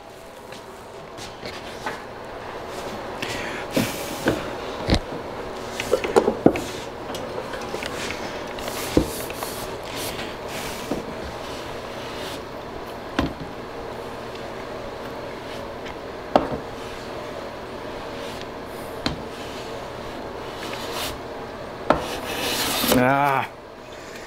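Metal hand plane being worked along the side of a dovetailed wooden drawer, a steady scraping of the sole and blade on the wood with occasional sharp knocks. The drawer side is being trimmed to fit its opening.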